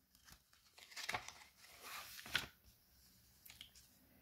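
Faint rustling with a few soft clicks, in small clusters about a second in and again around two seconds in.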